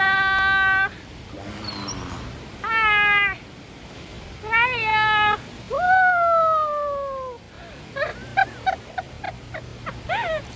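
Beluga whale vocalising in air: a series of mewing, whistle-like calls, one long falling whistle, then a quick run of short chirps near the end.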